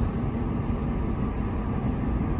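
Steady road and engine noise of a car driving along a town street, heard from inside the cabin.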